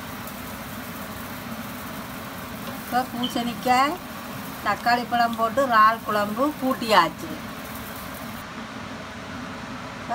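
A person speaking in short stretches between about three and seven seconds in, over a steady low hum.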